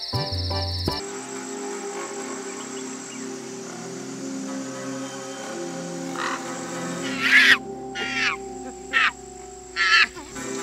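A steady high insect trill that cuts off about a second in, then a low steady drone of background music. In the last four seconds come five loud, separate animal calls that bend in pitch, a forest creature calling.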